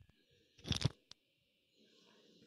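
A brief crunching noise a little after half a second in, followed by a single sharp click.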